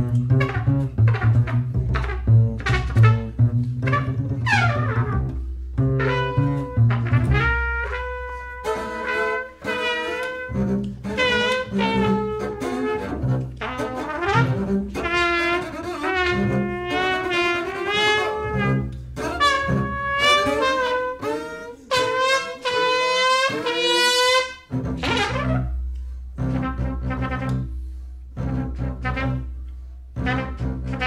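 Jazz duo of trumpet and double bass. Low bass notes under the horn at the start and again near the end, with the trumpet alone in the middle playing lines whose pitch wavers and bends.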